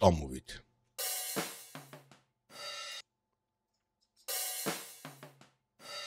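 Raw drum-kit overhead recording played back from a DAW track: a short passage of cymbal and drum hits with bright ringing, heard twice, each time about two seconds long with a silent gap between.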